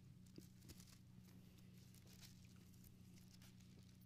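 Near silence: faint scattered rustles of Bible pages being turned, over a steady low hum.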